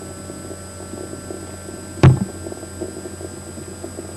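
Steady electrical hum in a small room, with one short, dull knock about halfway through.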